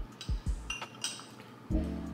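A few light clinks of a ribbed glass drinking cup and straw being handled during a sip, over background music.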